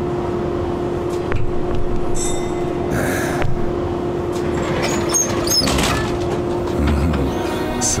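Running noise inside a city tram or bus: a steady rumble with a held humming tone, scattered clinks and rattles, and a few brief high squeaks, over background music.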